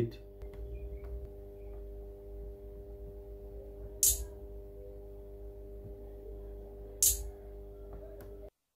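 Two single electronic 808 hi-hat hits, short and bright, about four and seven seconds in, over a faint steady hum of several tones.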